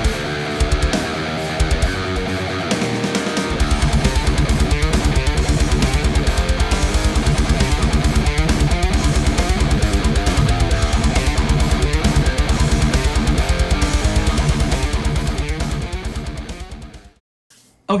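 Ibanez RG421QM electric guitar with Quantum pickups playing a heavy-metal part in a full backing-track mix. A fast, steady low pulse comes in a few seconds in, and the music fades out near the end.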